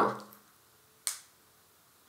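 A single short, sharp click about a second in, against a quiet room.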